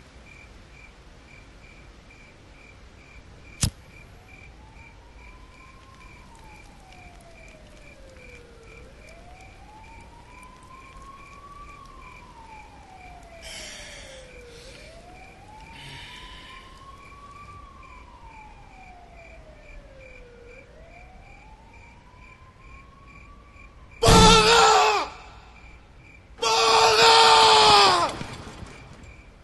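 A distant siren wailing slowly up and down, each rise and fall taking about six seconds, under a steady high chirping. There is a single sharp click about four seconds in. Near the end two loud, harsh pitched bursts cut in, about two seconds apart, the second a little longer.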